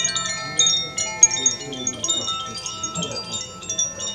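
Metal chimes ringing, many bright high tinkling notes struck in quick irregular succession and overlapping as they ring on.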